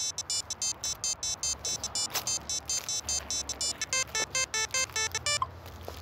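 Mobile phone ringtone ringing: a fast electronic melody of short high beeps, about six or seven a second, with lower notes joining near the end. It stops about five and a half seconds in, when the call is answered.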